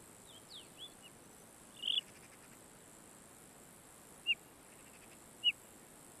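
Faint outdoor ambience with short, high bird chirps: a few quick notes in the first second, a brief burst at about two seconds, and two single chirps near the end.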